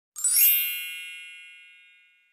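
A bright, high chime or sparkle sound effect, struck once just after the start and ringing away over about two seconds.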